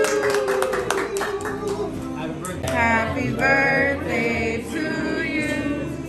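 A group of people singing a birthday song together, with hand clapping in roughly the first two seconds.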